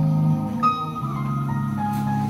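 Instrumental background music: sustained pitched notes over a steady low line, with the notes changing about every half second to a second.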